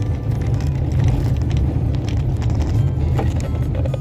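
Car tyres running over stone-block paving, heard from inside the car: a steady low rumble with small knocks and rattles as the car shakes on the stones.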